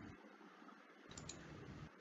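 Near silence: room tone, with a couple of faint clicks a little past the middle.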